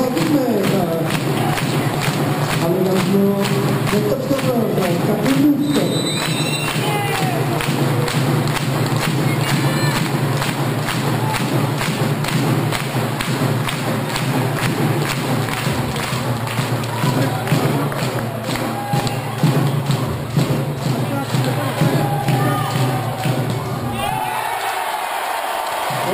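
Spectators in a sports hall during a volleyball rally: steady rhythmic thumping from the fans, with shouting and chanting voices over it.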